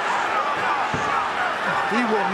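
Fight broadcast audio: men's commentary voices over a steady wash of arena crowd noise.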